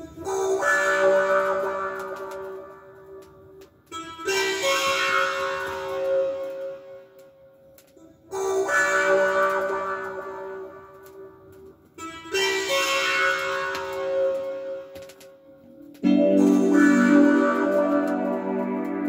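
Music played from a vinyl record on a turntable, starting out of near silence: a chord phrase that starts suddenly and fades, repeating about every four seconds. A fuller, lower part comes in near the end.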